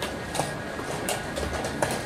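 A few sharp clicks and knocks of wooden chess pieces being set down and chess clock buttons being pressed, the loudest near the end, over the steady noise of a tournament playing hall.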